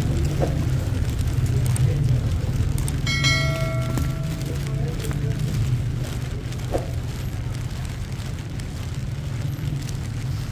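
Wet city street ambience: a steady low rumble of traffic and outdoor air, with faint voices of passers-by. About three seconds in, a short bright ringing tone sounds and fades within a second.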